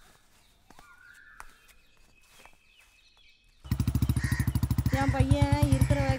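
Motorcycle engine running with a fast, even thudding beat. It comes in suddenly about three and a half seconds in, after a quiet stretch.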